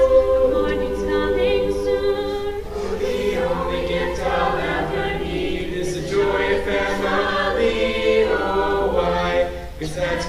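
An a cappella vocal ensemble singing in harmony without instruments, opening on held chords and then moving through changing notes.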